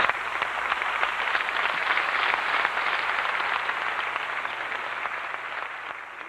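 Audience applauding, a dense steady clapping that slowly fades toward the end.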